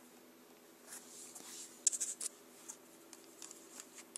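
Light handling noise: faint rustling and a few sharp little clicks of wires and plastic connectors being moved about, the clicks bunched about two seconds in, over a low steady hum.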